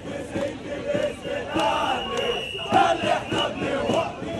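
Large crowd of football supporters chanting and shouting together, the voices rising and falling in rhythm. A steady high tone sounds over the crowd for about a second in the middle.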